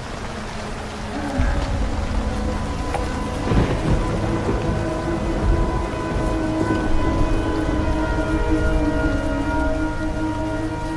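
Dramatic soundtrack: a deep low rumble swells up about a second and a half in, and from about halfway long held notes come in and carry on.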